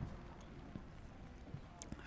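Quiet shop room tone with a faint steady hum and a few soft footsteps on the floor.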